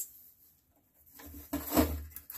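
Handling noise from a cheap plywood table easel being opened out by hand: wooden parts rubbing and knocking as its support prop is raised, starting about a second in and loudest near the end.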